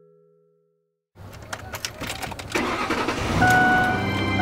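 A mallet-percussion note fades out, then after a short silence a car engine is started about a second in, cranking with clicks and catching into a run that grows louder. A steady tone comes in near the end.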